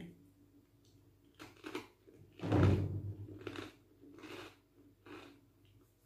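A crisp kamut cracker being bitten and chewed: a series of short crunches a little under a second apart, the loudest about two and a half seconds in.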